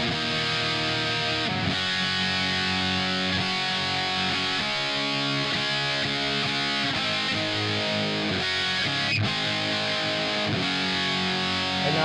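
Distorted electric guitar chords, strummed and left to ring, re-struck every second or two, played through a Marshmello Jose 3Way 50-watt tube amp head on a gainier channel. The master volume's pull switch is engaged; it puts a resistor between the cathode follower and the tone stack, which adds a little squish and makes the tone more compressed sounding.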